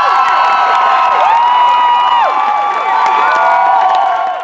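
A theatre audience cheering and whooping loudly, many high voices in long overlapping shouts, with some clapping.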